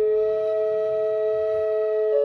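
Wooden Native American-style double flute playing two notes together, a lower and a higher tone, both held steady.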